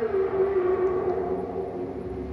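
A man's voice holding one long, steady, hum-like note, a drawn-out syllable, that fades out near the end.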